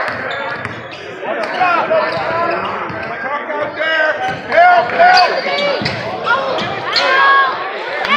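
A basketball dribbled on a hardwood arena court, repeated sharp bounces under the talk of nearby spectators.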